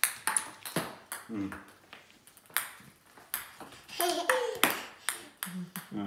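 Plastic ping pong balls bouncing on a hardwood floor: about ten sharp, irregularly spaced clicks, each with a short ring.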